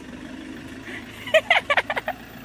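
School van engine idling at the curb. About a second and a half in, a small child's voice cuts in with several short, loud cries.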